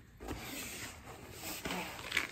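Soft rustling and scraping of cardboard and plastic wrapping as a long plastic-wrapped package is slid out of a cardboard shipping box, with a few faint handling clicks.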